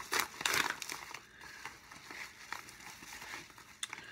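Packaging crinkling and rustling as a parcel is unwrapped, busiest in the first second, then scattered crackles.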